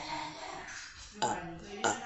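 A woman's short wordless vocal sounds reacting to ice-cold water, the loudest about a second in, with two sharp clicks, one about a second in and one near the end.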